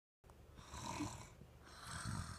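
A person snoring: one rough, drawn-out snore, then the start of another near the end.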